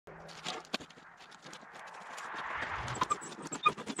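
Split firewood knocking and clattering as it is handled: a quick, irregular run of sharp wooden knocks, with a hiss swelling up around the middle.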